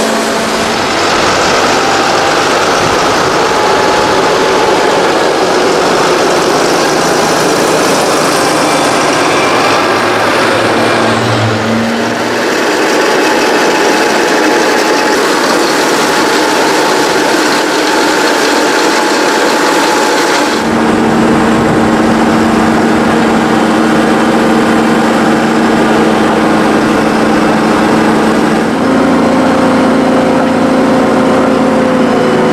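Diesel engines of large farm tractors and a wheel loader running under load while spreading and compacting chopped maize on a silage clamp. The engine sound changes abruptly several times, near the middle and about two-thirds of the way through, as the picture switches between machines.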